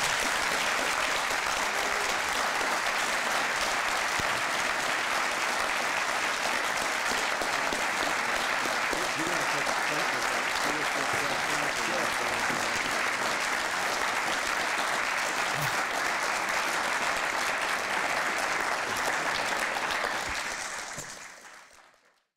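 Large audience applauding steadily, the clapping fading out near the end.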